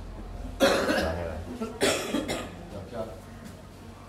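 A person coughing twice, about half a second and just under two seconds in.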